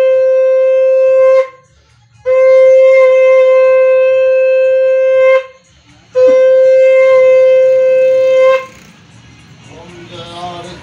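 Conch shell (shankh) blown in three long, steady, single-pitched blasts of about two to three seconds each, with short breaks between them, as part of the aarti offering. The first blast is already sounding at the start, and the last ends a little over a second before the end.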